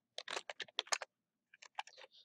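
Typing on a computer keyboard: a quick run of keystrokes in the first second, then a short pause and a few more keystrokes near the end.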